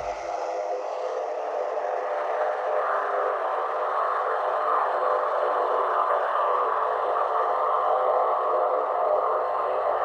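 A steady droning hum made of several held pitches, even in level throughout, with no deep bass.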